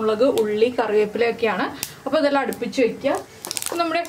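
A woman talking, and near the end mustard seeds start popping in hot oil in a frying pan, a run of quick sharp clicks.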